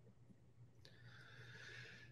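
Near silence with a faint steady low hum; from about a second in, a faint breath drawn in through the mouth.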